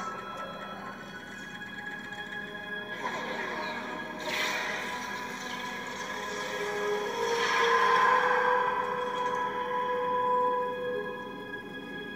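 Film soundtrack played on a computer and picked up off its speaker: held music tones with a rushing noise that comes in about four seconds in, swells to its loudest around two-thirds of the way through, then eases off near the end.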